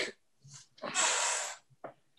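A person breathing out audibly close to a call microphone: one short, hissy exhale of under a second.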